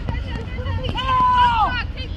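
Sideline spectator shouting: one long, high, drawn-out shout about a second in that falls away at its end, with fainter voices around it.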